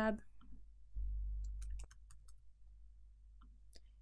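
Computer keyboard keys and mouse buttons clicking, a handful of separate sharp clicks spread over a few seconds, with a brief low hum underneath about a second in.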